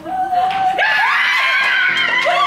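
Several women shrieking and squealing with joy, high voices overlapping. The shrieks get suddenly loud about a second in.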